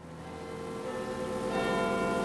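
A ringing, bell-like tone with several steady pitches, swelling up gradually out of silence.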